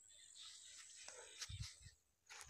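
Near silence: faint open-air ambience, with a brief low thump about one and a half seconds in.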